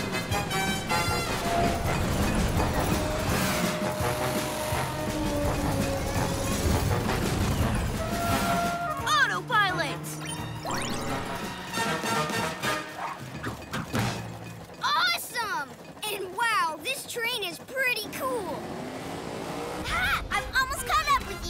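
Cartoon soundtrack: action music mixed with vehicle sound effects, then, from about halfway, a run of quick warbling, gliding electronic chirps and tones.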